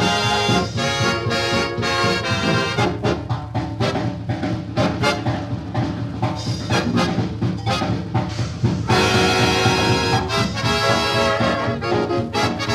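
Swing big-band instrumental played from a 1939 78 rpm shellac record, with trombones and trumpets to the fore. About nine seconds in, the full band comes in louder.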